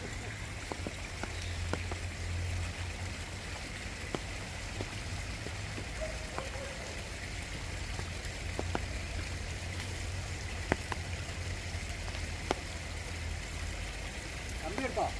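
Light rain falling on wet foliage, a steady hiss with scattered sharp drips ticking now and then over a low rumble.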